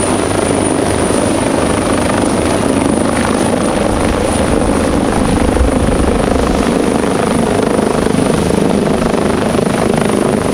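Ornge AgustaWestland AW139 air ambulance helicopter flying low overhead: the rotor and turbines run steadily and loudly, with a thin high whine above them.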